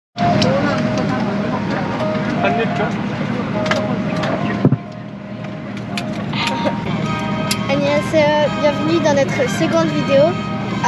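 Airliner cabin hum, a steady low drone, under close voices talking and laughing. A sharp click comes about halfway through, and the level dips briefly after it.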